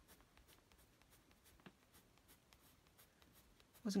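Coloured pencil scratching on sketchbook paper in a run of faint, short strokes, darkening the middle of a drawn eyebrow.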